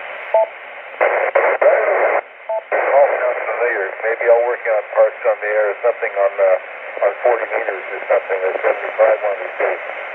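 A station's voice received over 10-meter FM through the Kenwood TS-480 transceiver's speaker, relayed by the repeater: narrow, tinny-sounding speech over steady hiss. The hiss comes up alone for about a second before the voice starts, and briefly drops out a little after two seconds.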